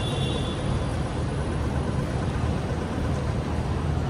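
Steady outdoor city street noise: a low, even rumble of traffic with a light hiss over it.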